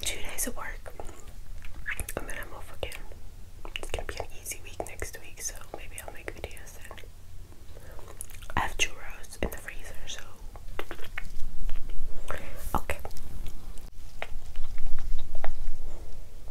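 A woman whispering close to the microphone, with wet mouth clicks and soft chewing sounds between the whispers. The sound is louder over the last few seconds.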